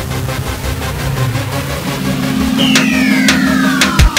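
Electronic background music building up and growing louder, with a steady low synth note joining about halfway through and a sweeping effect that falls in pitch over the last second and a half.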